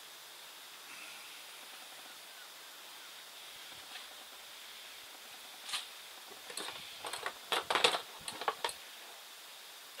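Juniper foliage being handled and cut in pruning: faint hiss at first, then a single crisp click about six seconds in, followed by a quick string of short clicks and rustles from about seven to nine seconds, loudest near the eight-second mark.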